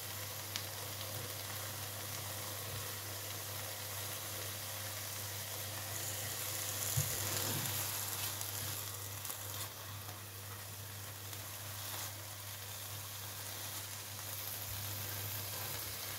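Tomato slices and cauliflower frying in oil in a hot pan: a steady sizzle, a little louder midway, with a few light taps.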